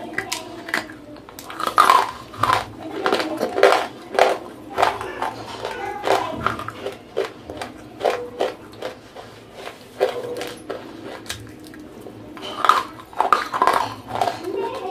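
Close-miked biting and chewing of dry grey eating clay: a run of sharp, irregular crunches as the brittle chunks crack and break up in the mouth.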